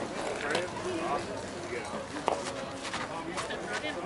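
Players' voices chattering around the field, with a single sharp knock a little over two seconds in.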